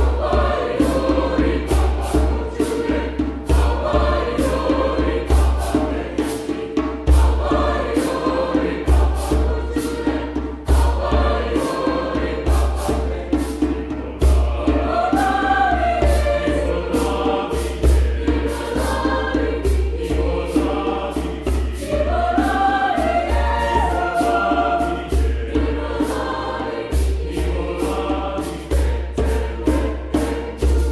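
Mixed choir singing to a steady hand-drum beat.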